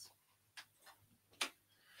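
Near-silent room tone broken by a few brief light clicks, the clearest about a second and a half in.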